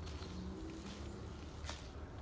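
Faint outdoor ambience with a low steady rumble, and one soft crunch of a footstep on dry grass and yard litter near the end.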